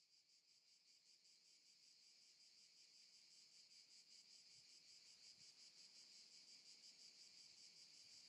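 Faint crickets chirring: a steady high trill of fast, even pulses that fades in slowly.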